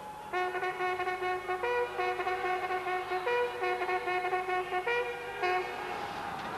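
Brass band music: a series of long held chords, each changing to the next about every second and a half, ending shortly before the close.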